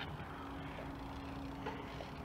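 Faint outdoor background noise: a low steady rumble with a thin steady hum running through it, and a single click right at the start.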